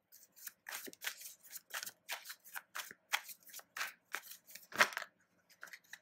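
A tarot deck being shuffled by hand: a quick, even run of papery swishes, about three or four a second, with one louder slap about five seconds in.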